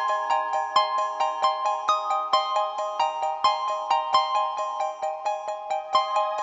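Background music: a quick, bright run of short repeated notes, several a second, over a steady lower pattern.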